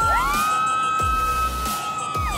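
A long, high-pitched human scream that rises at the start, holds, and falls away near the end, from a bungee jumper in free fall. It is heard over background music with a low beat.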